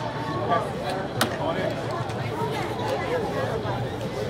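Indistinct chatter of people talking around the group, with a single sharp click about a second in.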